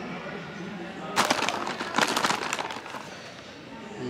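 Plastic snack bag crinkling as it is handled, a dense burst of crackles starting about a second in and lasting under two seconds, over a low murmur of the departure gate's ambience.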